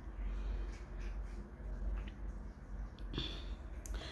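Several cats eating cooked bone-in chicken from a shared bowl: faint chewing with a few small clicks.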